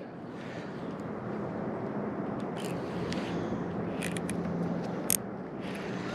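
Baitcasting reel being cranked while a small smallmouth bass is played in, with a few short clicks over steady outdoor noise and a faint low hum.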